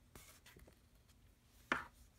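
Quiet handling of a folded cardstock greeting card: soft paper rustles and light ticks as the card is opened and closed, with one brief, louder swish near the end.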